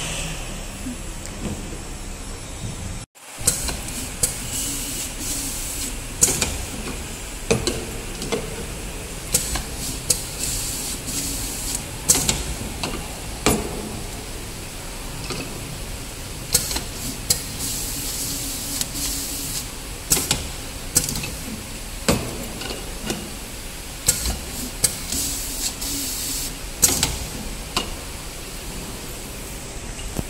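Bottle labeling machine at work: a steady machine hum broken by many short air hisses and clicks, coming irregularly every half second to second and a half, from its air cylinders and rollers.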